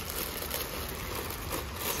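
Quiet rustling and handling noise of a hard plastic candy jar being turned in the hand, with a few faint clicks.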